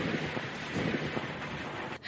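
Strong wind blowing across the microphone, a steady rushing noise with an uneven low rumble underneath, cut off abruptly at the end.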